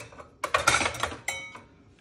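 Kitchenware clattering as a measuring cup is fetched: a quick run of clinks and knocks about half a second in, ending in a last clink with a brief ring, then quiet.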